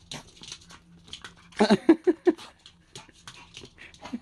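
A small dog makes three short vocal sounds in quick succession about halfway through, amid soft rustling and clicking as it is petted and nudges against a person.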